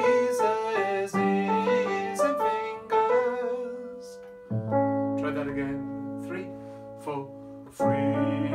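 Nord Stage 3 stage keyboard played with a piano sound: a quick run of melody notes over chords, then a new chord struck about halfway through and left to ring and fade.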